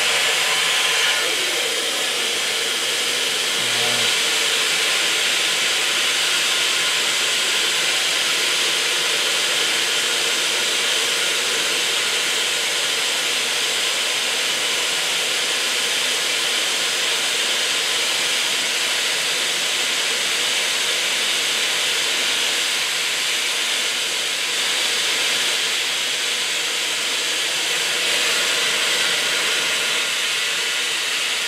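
Steady, loud hiss of a vintage steam car's boiler being blown down through its open bottom valves. Superheated water at about 600 psi flashes into steam as it blasts out under the car, clearing mud and sediment from the boiler bottom.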